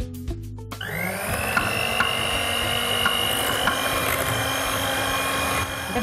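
Electric hand mixer whipping cream in a glass bowl. The motor spins up with a quickly rising whine just under a second in, then runs steadily with a whirring hiss and a few light knocks of the beaters, stopping shortly before the end.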